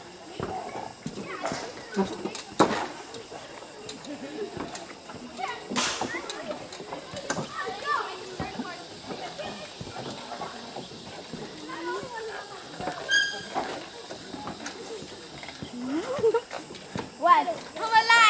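Indistinct voices of adults and children talking and calling out, with a few sharp knocks, the loudest about two and a half seconds in, over a faint steady high hiss.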